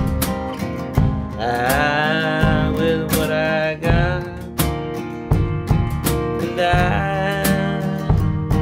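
Acoustic guitar strummed in a steady rhythm, with a man's singing voice holding a wavering melody over it about a second and a half in and again near the end.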